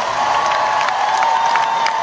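Large arena concert crowd cheering and applauding, with one long held shout or note standing out above the noise.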